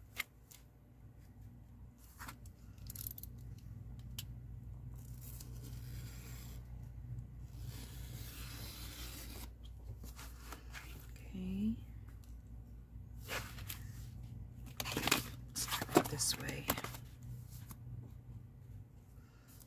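A snap-off utility knife cutting through a hardback book cover's board and spine along a ruler: scattered clicks and scrapes, then a run of louder slicing, tearing strokes near the end.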